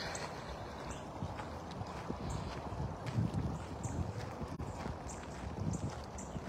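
Footsteps of a person walking: a series of soft, uneven steps with light rustling, a little heavier about halfway through and again near the end.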